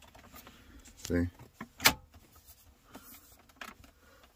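Plastic centre-console trim of a BMW E70 X5 snapping into its clips under hand pressure: one sharp click about two seconds in, with a few fainter clicks and taps later on.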